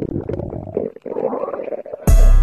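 Stomach growling in an irregular low rumble that rises in pitch about a second and a half in: a hungry stomach.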